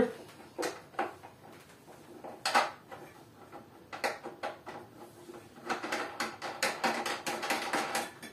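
Light clicks and knocks of a homemade knob, an M6 long nut set in hot glue inside a plastic bottle cap, being fitted and screwed onto its bolt: a few separate clicks, then a quick run of clicking over the last two seconds.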